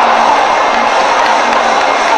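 Traditional Burmese ringside music for a Lethwei bout, a wavering melody line over the steady noise of a cheering stadium crowd.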